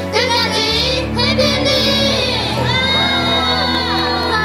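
Several young women's voices shouting together on cue, with cheering, over background music with a steady low bass.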